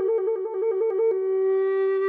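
Native American flute playing a rapid trill on its bottom note, one finger flicking between two neighbouring notes. About a second in the trill stops and the lower note is held steady.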